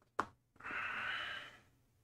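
A short click, then a person breathing out hard for about a second, a long breathy exhale like a sigh.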